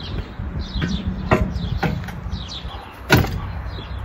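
Metal knocks and clanks as a front bumper crossmember is offered up to a car's front end: a few light knocks, then one louder clank about three seconds in.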